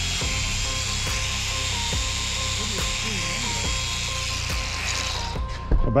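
Belt sander attachment driven by a DeWalt 20V brushless angle grinder, its abrasive belt running against a metal tube with a steady high whine and sanding hiss. The whine shifts slightly in pitch with the load, and the tool stops about five seconds in.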